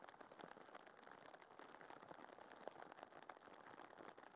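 Near silence: a faint hiss with a few tiny ticks.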